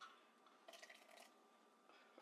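Near silence, with one faint, short splash of liquid about a second in: a ladleful of chile-soaking water poured into a glass blender jar of pureed chile sauce.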